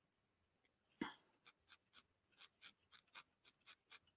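Faint, quick, scratchy pokes of a barbed felting needle stabbing into a wool felt piece, several a second, with a brief soft sound about a second in.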